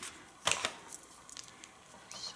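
Light handling noise as a pipe cleaner is wrapped around a plastic headband and scissors are moved aside: a brief cluster of rustling clicks about half a second in, then a few faint ticks.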